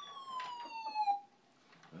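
Electronic siren of a battery-powered toy fire truck: one wail sliding slowly down in pitch, cutting off a little past a second in, with a couple of light clicks along the way.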